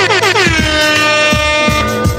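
DJ air-horn sound effect over a hip-hop beat: a rapid stutter of short falling horn blasts that settles into one long held horn note about a second in, with kick drums and bass underneath.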